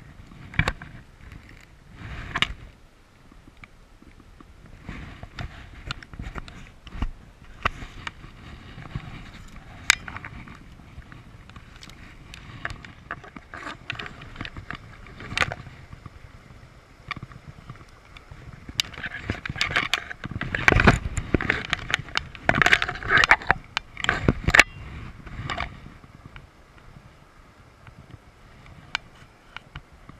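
Irregular clicks, knocks and rustles of hands and fly-fishing gear being handled close to the microphone, with a louder, busier spell about two-thirds of the way through.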